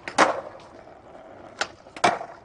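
Skateboard tricks on concrete: a loud clack as a 360 flip lands on its wheels early on, then a sharper, lighter snap of the tail popping for the next flip near the end.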